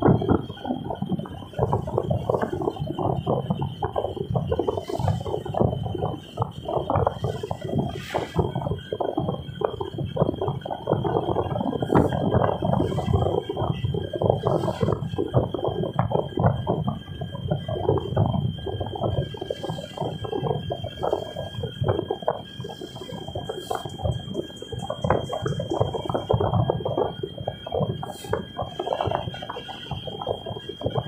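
Fast, irregular rattling and clicking inside a moving car, of the kind a loosely mounted camera or cabin trim makes as it shakes with the road. A faint steady high whine runs under it.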